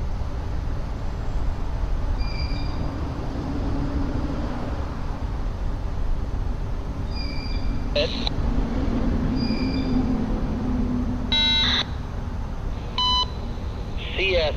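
A steady low rumble with faint, repeating high chirps. Near the end come two short electronic beeps from a railroad scanner radio, about a second and a half apart, as a trackside defect detector keys up its broadcast.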